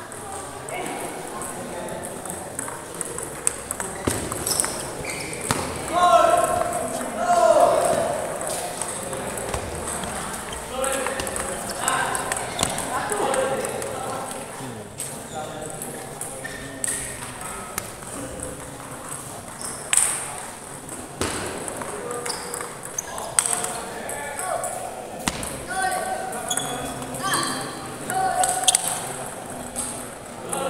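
Table tennis balls being struck, sharp irregular clicks of ball on bat and table from several tables at once, over a hubbub of voices.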